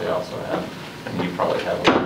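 People talking in a room, with one sharp knock near the end.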